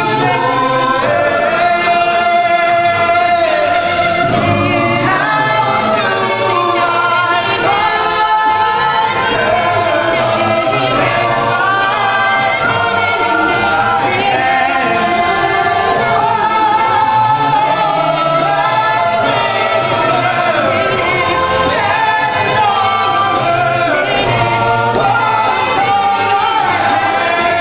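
A cappella group singing, a male soloist over the group's backing vocals, with a steady beat kept by vocal percussion.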